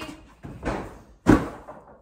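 Hand thumping against the side of a tall cardboard box: two knocks, the second about a second in and the louder.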